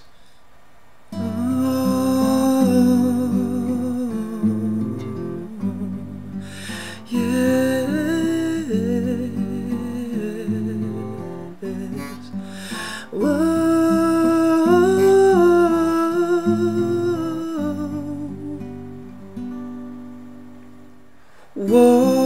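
A male voice sings a long wordless "whoa" in sliding vocal runs over strummed acoustic guitar chords. This is the opening of a soft acoustic lullaby. Voice and guitar come in about a second in and trail off near the end.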